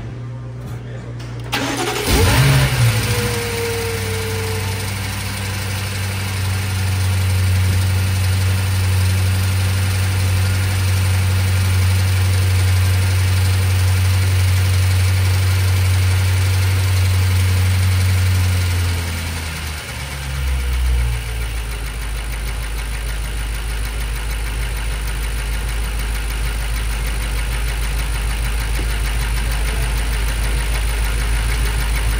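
BMW F90 M5's 4.4-litre twin-turbo V8 starting about two seconds in, flaring up, then running at a raised fast idle. About twenty seconds in the idle drops to a lower, steady note.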